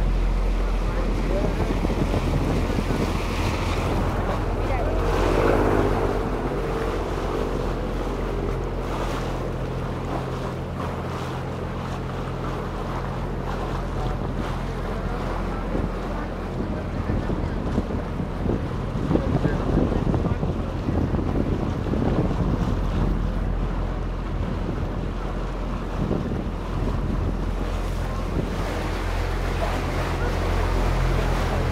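Canal tour boat's motor running with a steady low hum, under water splashing along the hull and wind buffeting the microphone. The hum drops back through the middle and comes up again near the end.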